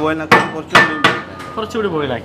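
A metal ladle clanking against a large steel pot of rice: three sharp strikes within about a second, each with a short metallic ring.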